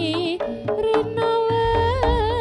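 Live jaranan accompaniment music: a held, wavering melody line over drums, with heavier low drum strokes from about halfway through.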